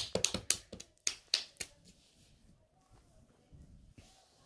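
A person clapping by hand, about eight quick claps, not evenly spaced, that stop under two seconds in; faint light handling noise follows.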